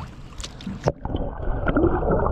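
Water splashing at the side of the boat as a kicking lake trout is held in the water for release, with a couple of sharp splashes in the first second. About a second in, the microphone goes under the surface and the sound turns suddenly muffled: a low underwater rumble with small clicks.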